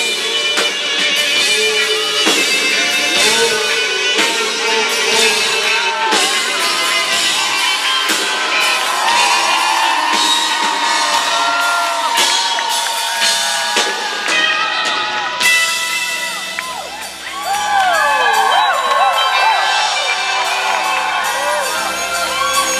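Live rock band with drums, electric guitar and bass playing a long instrumental passage with no singing. About three-quarters of the way through the full playing drops back briefly, then the crowd whoops and cheers over the held notes of the band.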